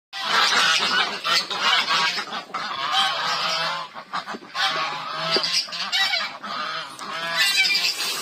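A crowd of domestic geese and ducks calling, with many overlapping honks and quacks.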